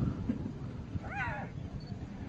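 A hyena being mauled by lions gives one short, high-pitched distress cry about a second in, its pitch rising then falling, over a low background rumble.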